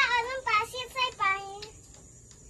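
A young child's high voice singing a short phrase of several syllables that ends after about a second and a half.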